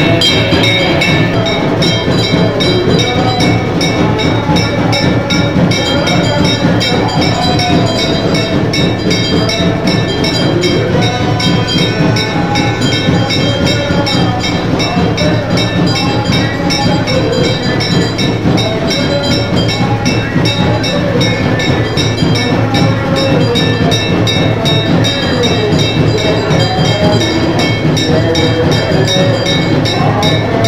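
Aarti being performed: a brass hand bell rung rapidly and without pause, its steady metallic ringing over devotional music or singing.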